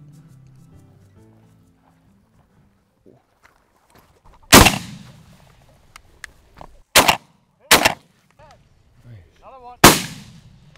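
Four shotgun shots at flushing sharp-tailed grouse. The first comes about four and a half seconds in and rings out longest, two more follow close together less than a second apart, and the last comes near the end.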